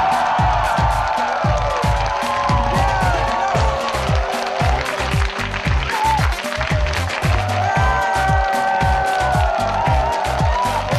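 Music with a steady kick-drum beat, about two beats a second, under a crowd clapping and cheering.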